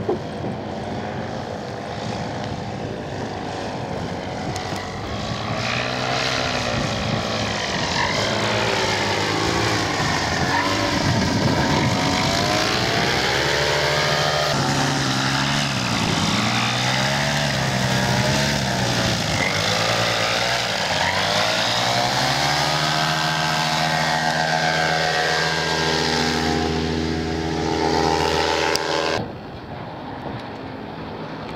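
Paramotor engine and propeller running at flying power, its pitch sliding up and down again and again as the machine passes back and forth near the microphone. The sound drops away abruptly near the end.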